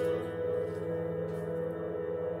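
Casio electronic keyboard sounding a steady, sustained chord that slowly fades, with no new notes struck.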